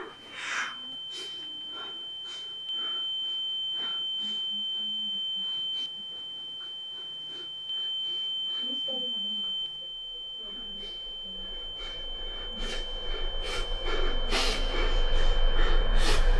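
A steady, high-pitched electronic tone, a ringing-in-the-ears sound effect, held almost unbroken and stepping louder twice for a couple of seconds each. Faint low vocal sounds lie beneath it, and a low swelling sound builds from about twelve seconds in, loudest at the end.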